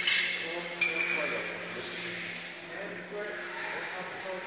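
Two sharp metallic clinks that ring on, under a second apart, from the metal parts of an order picker's cab, then a steady low hum.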